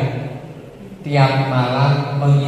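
A man's voice over a microphone, with long held vowels; it trails off and starts again about a second in.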